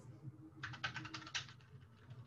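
Faint typing on a computer keyboard: a quick run of about ten keystrokes starting about half a second in, then a few fainter taps.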